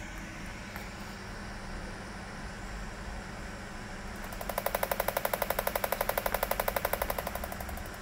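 Body-sculpting machine's applicator paddles emitting its pulses in automatic mode: a rapid, even train of clicks, about ten a second, starting about halfway in and lasting about three seconds before fading.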